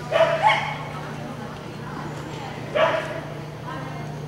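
Dog barking during an agility run: two quick barks right at the start and a third near three seconds in.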